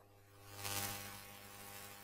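Faint, steady electrical hum and buzz with a soft hiss.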